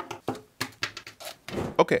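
A quick series of short clicks and rustles from hands handling the camera kit and its packaging, followed by a spoken 'okay' at the end.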